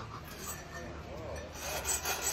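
A faint rubbing, scraping sound, as of something being worked against a stool seat.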